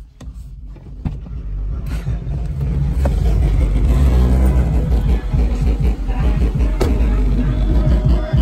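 Loud music with heavy bass, starting about two seconds in.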